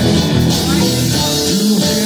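Live rock band playing, with an electric guitar and an acoustic guitar strumming together through the stage amplification.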